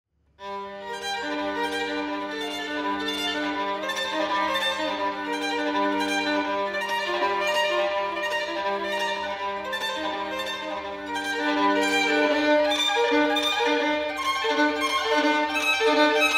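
Violin playing slow, sustained bowed notes over a held low drone note. About three-quarters of the way through the drone stops and the playing turns into a quicker, more rhythmic figure.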